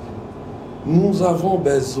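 A man speaking, starting about a second in; before that only a steady background hiss.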